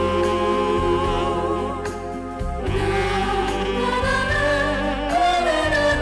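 A female vocal group of four singing held notes in harmony, with vibrato, over a band accompaniment with a steady bass line.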